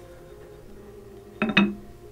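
A cast-iron weight plate clinks twice as it is set onto a stack of iron plates, about one and a half seconds in. Under it, the electric turntable's motor gives a faint steady hum as it runs under a heavy load.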